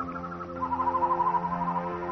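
Background score: a wavering, flute-like melody stepping down in pitch over a sustained low drone.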